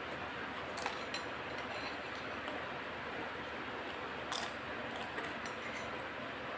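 A metal spoon clinking a few times against a glass bowl: twice about a second in, then again around four and five seconds, over a steady hiss.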